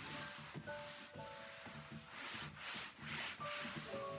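A cloth wiped back and forth across a desktop in repeated rubbing strokes, heavier in the second half. Soft background music of single held notes plays underneath.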